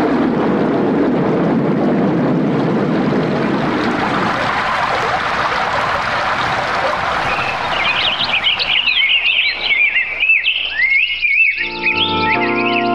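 Birds chirping in quick, rising and falling whistles, starting about eight seconds in over a steady noisy ambience; a radio-drama sound effect setting an outdoor scene. Keyboard music comes back in at the very end.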